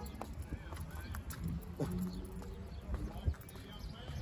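Quiet outdoor background: a steady low rumble with a few faint clicks and faint distant voices about halfway through.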